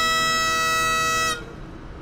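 Highland bagpipes holding the final note of a tune over their steady drones, then cutting off abruptly about a second and a half in.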